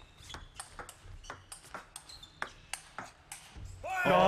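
Table tennis rally: a plastic ball clicking off rubber-faced paddles and bouncing on the table, several sharp ticks a second in quick back-and-forth.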